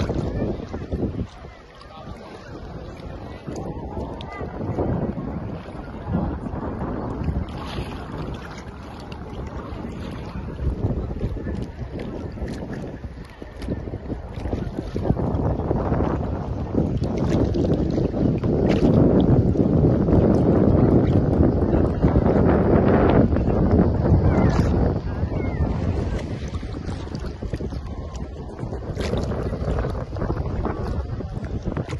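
Wind buffeting the microphone, with sea water sloshing close to a camera held just above the surface of shallow water; the rushing grows louder in the second half.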